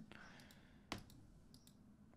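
Near silence with a single short click a little under a second in, followed by a couple of fainter ticks.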